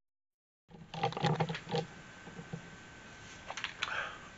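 Dead silence for a moment at an edit, then bumps, knocks and rustling as a camera is handled and moved, with a faint steady high whine in the middle.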